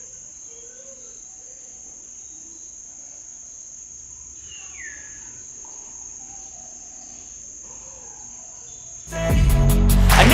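Crickets chirping in a faint, steady, high-pitched drone, with a few small scattered sounds. About nine seconds in, loud music with a beat cuts in abruptly and drowns them out.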